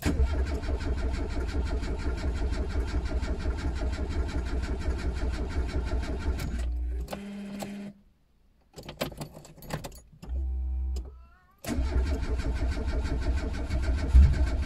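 Starter motor cranking the engine of a 1987 Renault 5 Campus in three tries without it catching: a long crank of about seven seconds, a short one about ten seconds in, and another from near twelve seconds on.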